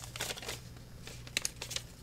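Faint crinkling and rustling of a paper note being handled, in two short spells with a few small clicks, about a quarter-second in and again past the middle.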